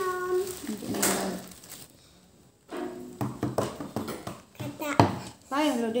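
Crinkling and clicking of a small foil medicine packet being torn and opened by hand, with one sharp click about five seconds in, between bits of speech.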